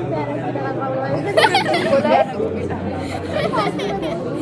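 Several young women chattering over one another, with a louder, excited outburst of voices about a second and a half in.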